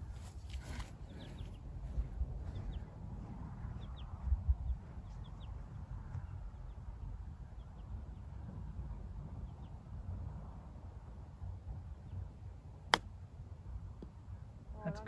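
Steady low wind rumble on the microphone with a few faint bird chirps. About a second before the end, a single sharp click: a golf iron striking the ball on a short chip shot toward the green.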